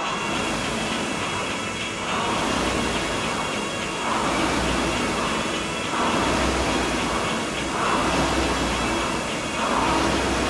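Concept2 air rower's flywheel fan whooshing in surges, one surge about every two seconds with each drive stroke.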